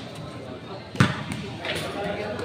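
A single sharp thud of the game ball being struck about a second in, ringing briefly under the court roof, over a low murmur of onlookers.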